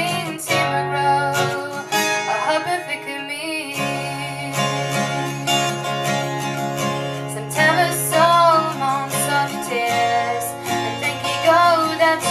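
Acoustic guitar strummed steadily while a woman sings over it into a microphone, her voice coming in phrases above the chords.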